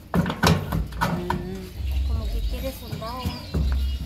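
Quiet talking, with a few sharp knocks in the first half second as a steel wheelbarrow wheel rim is handled.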